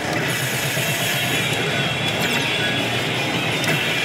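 Dense, steady din of a pachislot hall, mixed with music and effects from an Oshu! Banchou 3 pachislot machine as it shows a confirmed bonus.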